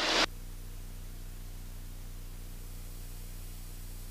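Piston engine and propeller of a light airplane running steadily in the climb: a constant low drone with an even hiss over it.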